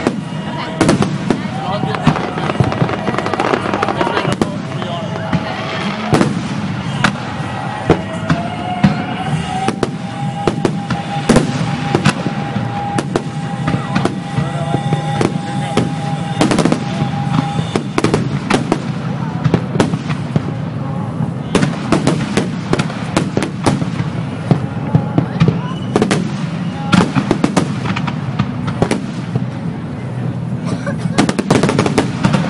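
Fireworks display: aerial shells bursting one after another in rapid, irregular bangs, with crackling between them and no let-up.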